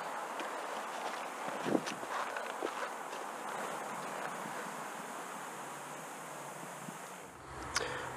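Outdoor ambience with a steady wind hiss on the microphone, broken by a few soft knocks and rustles, the strongest a little under two seconds in.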